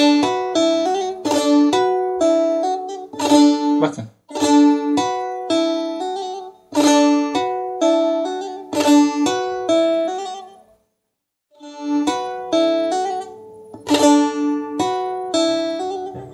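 Bağlama (saz) played in the şelpe technique: the strings are struck and plucked with the bare fingers instead of a plectrum. It plays a short phrase of bright plucked notes, repeated over and over. The playing stops for about a second near eleven seconds in, then starts again.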